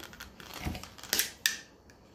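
Hard clear plastic clamshell of a Scentsy wax bar being handled, giving a few quiet, short clicks and crackles spread over the first second and a half.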